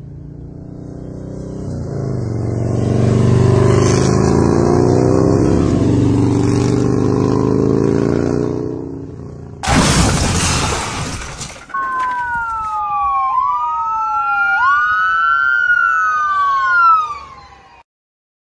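Motorcycle engine running and accelerating under way, then a loud crash about ten seconds in, lasting about two seconds. After the crash an emergency-vehicle siren wails, rising and falling in pitch, until it cuts off near the end.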